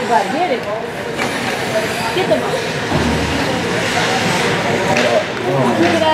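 Spectators' voices in an indoor ice rink, talking and calling out during a youth hockey game, with a few sharp knocks from play on the ice.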